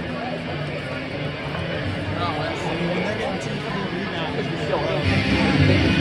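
Rink PA music with held bass notes over crowd chatter in the stands, getting louder about five seconds in.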